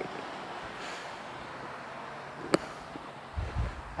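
Steady outdoor background noise with a sharp click right at the start and another a little past halfway, then a short low rumble near the end.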